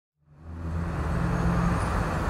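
A steady low rumble with a faint hum in it, fading in from silence over the first second and then holding.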